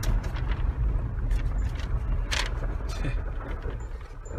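In-cab noise of a Jeep Wrangler JK Rubicon driving on a gravel road: a steady low rumble with a few short clatters, the sharpest a little over two seconds in.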